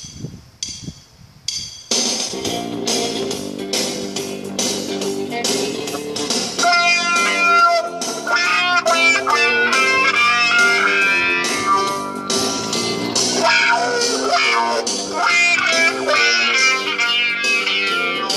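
Washburn Strat-style electric guitar, played through a Zoom effects unit, playing a blues shuffle with a homemade pick cut from a coffee cup. A few clicks and string noises come first, then the playing starts about two seconds in.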